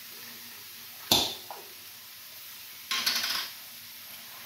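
A jar of cooking sauce being opened: a sharp click about a second in, then a short rasping rattle of the lid being twisted off near three seconds in.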